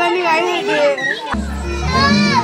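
Small children's voices and chatter, with music coming in about a second and a half in, carrying a heavy steady bass.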